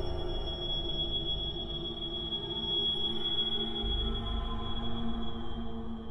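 Suspense film score: a sustained high ringing tone held over a low drone and rumble.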